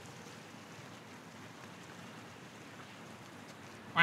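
Faint, steady outdoor background noise: an even hiss with no distinct events.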